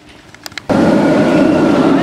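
Faint background, then about two-thirds of a second in an abrupt jump to a loud, steady rumble with a thin whine running through it: a steel roller coaster train running on its track.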